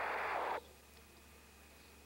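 Hissy, static-filled radio transmission with a faint voice in it that cuts off suddenly about half a second in, leaving near silence with a faint steady hum.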